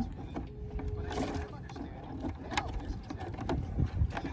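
Metal crab tongs clacking and scraping inside a plastic bucket as they grab a Dungeness crab: a handful of sharp knocks over a steady low rumble.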